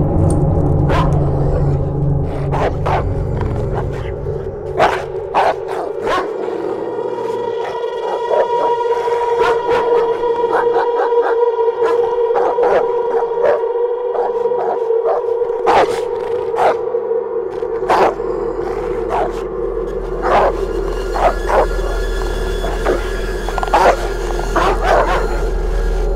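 A dog barking repeatedly in short sharp barks over a steady held droning tone. A deep rumble comes in about two-thirds of the way through.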